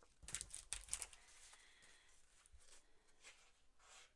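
Faint rustling of a pad of patterned paper sheets being handled, a few soft strokes in the first second or so, then near quiet.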